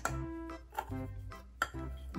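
Soft background music with held notes, and a couple of light clicks a little under a second in and again near the end, as plastic toy food slices are set down on a high-chair tray.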